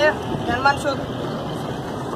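A person's voice in a few short utterances in the first second, followed by steady outdoor background noise.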